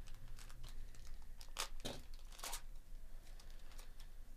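A jumbo pack of Topps Chrome Update trading cards having its wrapper torn open and crinkled, in a string of short crackling rips, the loudest about one and a half to two and a half seconds in.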